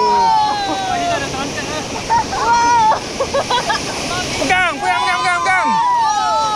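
Rushing whitewater of river rapids around an inflatable raft, with rafters yelling over it. A long falling cry fades out right at the start, short yells come a couple of seconds in, and several voices cry out together near the end.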